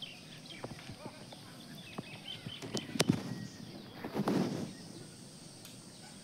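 Scattered footsteps and light scuffs of a person climbing down from a roof onto concrete steps, with one sharper knock about three seconds in and a brief rustling scrape just after four seconds, over faint outdoor background.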